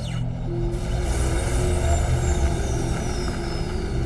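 Film soundtrack: a low drone under a loud rushing whoosh that sets in suddenly at the start. A thin high tone slowly falls in pitch through the sound, as with an aircraft passing.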